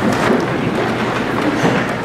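A congregation sitting down in wooden pews all at once: a dense rustle and shuffle of bodies and clothing, with many small knocks and creaks of the pews.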